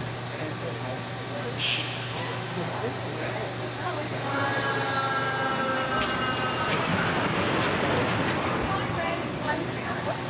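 Background voices of people nearby over a steady low hum, with a short hiss about two seconds in and a held whistle-like tone from about four to seven seconds in.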